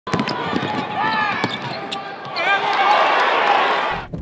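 Basketball game sound: the ball dribbling and sneakers squeaking on the hardwood court, with voices, and crowd noise swelling about two and a half seconds in.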